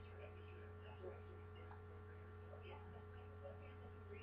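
Low steady electrical mains hum, with a faint, muffled voice leaking from a phone earpiece held to the ear.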